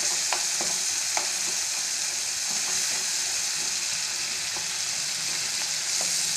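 Chopped tomatoes and green chillies sizzling in oil in a non-stick pan while a wooden spatula stirs them. A steady hiss runs under a few short scrapes and taps of the spatula against the pan, most of them in the first second or so.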